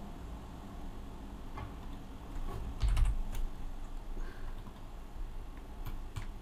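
A handful of scattered, separate clicks from a computer keyboard and mouse, with a dull knock about three seconds in, over a low room hum.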